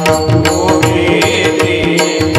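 Marathi Warkari devotional music: a harmonium holding steady notes over a brisk, even rhythm of pakhawaj and tabla strokes.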